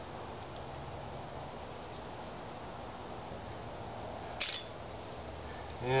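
Low steady background noise while dry grass tinder is handled, with one short crackle about four and a half seconds in.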